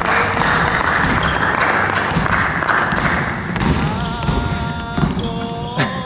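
A basketball bouncing on a wooden gym floor under a loud rush of noise, with music of several held notes coming in a little past halfway.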